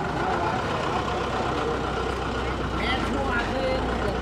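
Street background noise with a steady low engine rumble, like a vehicle idling close by, and faint voices.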